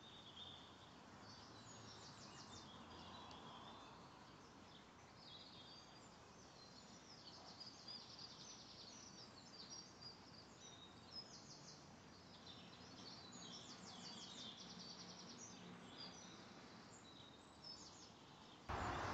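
Faint birdsong over quiet outdoor background noise: small birds singing quick, rapidly repeated trills and chirps, on and off throughout.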